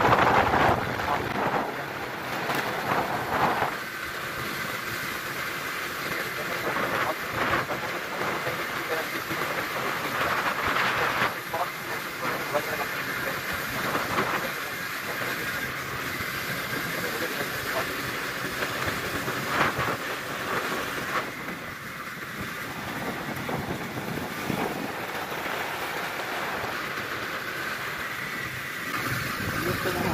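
A small motorcycle being ridden, its engine running under a steady rush of wind and road noise on the phone's microphone. The noise is a little louder in the first few seconds.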